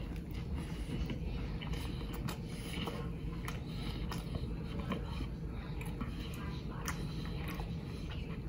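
A man biting into a cheeseburger and chewing it, heard as faint, irregular wet clicks over a steady low hum.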